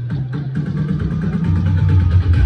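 Electronic dance music mashup with a heavy bass line and a fast, steady percussion beat. The bass steps lower and louder about three quarters of the way through.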